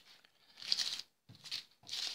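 Paper cupcake liners rustling in a few short bursts as they are handled.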